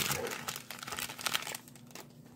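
Foil wrapper of a Topps baseball card pack crinkling as it is pulled open by hand. The crinkling fades out after about a second and a half.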